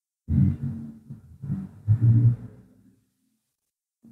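Loud, low rumbling background noise with a low droning hum in it, rising in three surges over about two and a half seconds, the loudest near the end.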